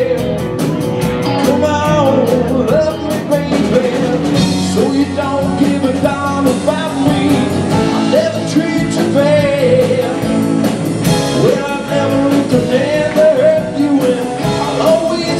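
A live blues-rock band playing, with electric guitars, bass guitar, stage piano and drum kit.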